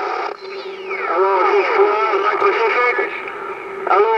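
CB radio receiving AM skip on channel 11 (27.085 MHz): a distant, static-laden voice comes through steady hiss, with a whistle sliding down in pitch over about two seconds.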